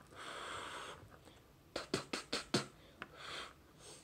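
Breath blown onto a small shotgun microphone as a mic check: a rushing puff of air in the first second and another about three seconds in, with a quick run of several short pops in between.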